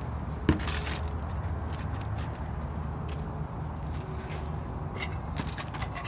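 Asphalt shingles and a bent metal step-flashing piece being handled and laid on a plywood roof deck: a sharp tap about half a second in and a few light scrapes and clicks near the end, over a steady low rumble.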